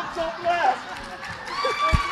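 Indistinct voices and calls from people in a hall during a staged chase skit, with a heavy footfall on the floor near the end.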